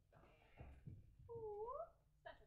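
A staged newborn baby's cry: one short wail, dipping then rising in pitch, near the end, after a few faint breathy vocal sounds.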